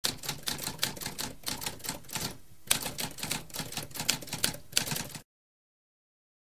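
Typewriter typing: a quick run of key strikes with a short pause about halfway through, stopping a little after five seconds in.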